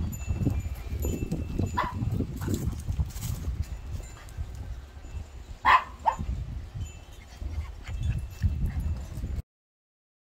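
Dogs playing together, with one giving a short, sharp bark about halfway through and a fainter one earlier, over a steady low rumble. The sound cuts out shortly before the end.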